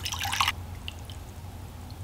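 Water poured from a tall drinking glass into a short glass tumbler, splashing into the glass. The stream stops about half a second in, leaving a few faint drips.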